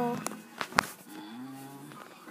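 A few sharp handling knocks on the phone in the first second, then a child's low hummed note held steady for about half a second.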